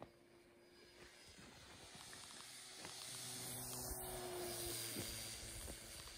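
Electric motor and propeller of a foam RC model plane whirring as it flies past overhead. It grows louder over the first few seconds and fades slightly near the end.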